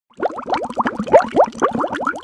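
Bubbly cartoon pop sound effect for an animated intro: a rapid run of short blips, each gliding quickly upward in pitch, several a second.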